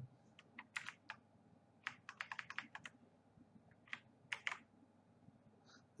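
Faint, scattered clicks of computer keyboard keys, with a quick run of several keystrokes about two seconds in.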